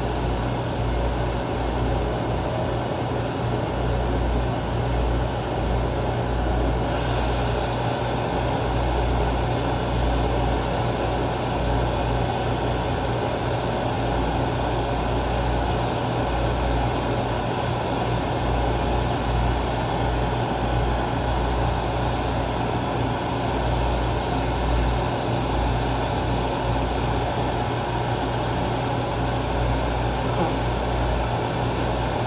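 Glassblower's bench torch flame hissing steadily, over a low constant hum of shop equipment. A brighter, higher hiss joins about seven seconds in.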